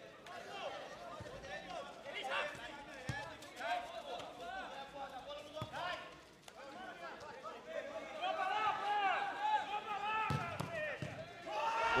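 Pitch-side sound of a seven-a-side football match: men on the pitch shouting and calling out to one another, with a few dull thumps of the ball being kicked.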